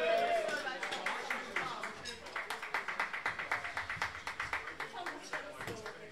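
A small audience clapping, beginning about a second in and dying away near the end, after a voice trails off on a falling note at the start.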